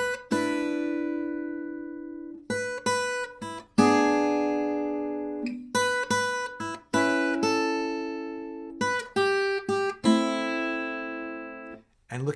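Acoustic flat-top guitar played fingerstyle, picking out the melody of an eight-bar blues in four phrases. Each phrase is a few quick notes that land on a chord, which rings out and fades.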